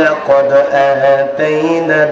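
A male preacher's voice chanting in the melodic, sung style of a Bengali waz sermon, with long held notes that waver slightly in pitch. A new phrase starts about one and a half seconds in.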